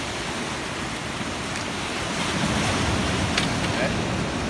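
Ocean surf breaking and washing over rocks: a steady rush of water that grows louder in the second half, with wind buffeting the microphone.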